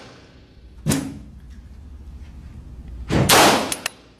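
Two pistol shots in an indoor shooting range: a sharper, quieter crack about a second in, then a louder shot about three seconds in that rings briefly off the range walls.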